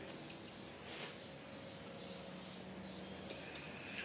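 Faint handling sounds of insulation being stripped off a green electrical wire, with a small click near the start and another near the end.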